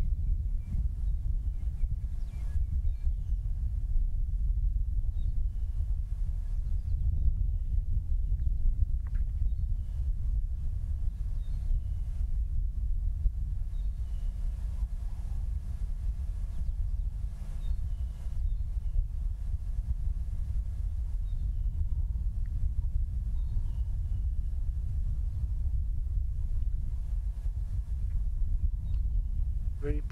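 A steady low rumble with faint, scattered bird calls in the distance.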